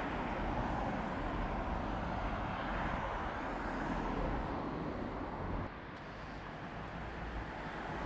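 Road traffic noise: cars driving past along a busy road, a steady rush of tyres and engines that drops somewhat quieter a little over two-thirds of the way through.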